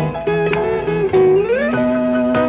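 Instrumental break in a live country song: a guitar plays picked notes, with one note sliding upward in pitch about a second and a half in.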